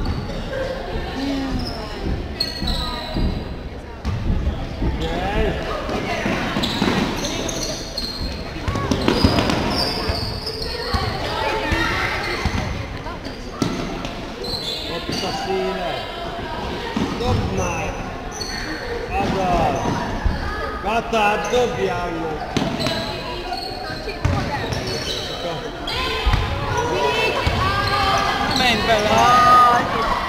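A basketball game in an echoing sports hall: the ball bouncing on the court amid players' and spectators' voices calling out, growing louder near the end.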